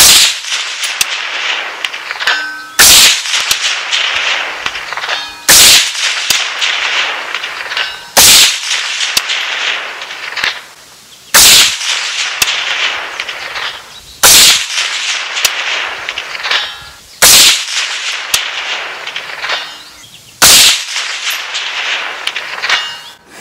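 Eight rifle shots from a PSA JAKL in 300 AAC Blackout firing AAC 125-grain full metal jacket rounds, about one every three seconds, each with a long echo rolling away across open country. A faint metallic ring comes back a couple of seconds after several shots: bullets striking a steel target at 500 yards.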